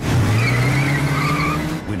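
A vehicle engine running hard, its drone rising slightly in pitch, with a high tyre squeal over it. It starts suddenly and drops away just before the two seconds are up.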